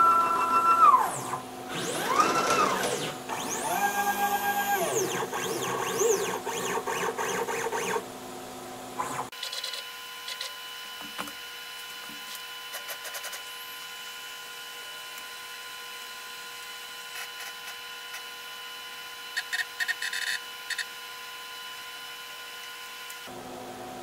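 Gatton CNC router's stepper motors whining as the machine is jogged into position to set its zero with a pointed V-bit: several short moves, each one rising in pitch, holding and falling away, over the first nine seconds or so. After that the held motors give a faint steady hum, with a few light clicks later on.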